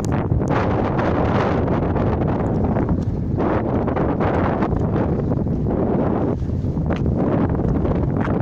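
Wind buffeting the microphone: a loud, steady rumbling noise.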